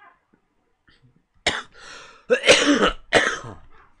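A person coughing in a fit of about four coughs, starting about a second and a half in, the loudest near the middle.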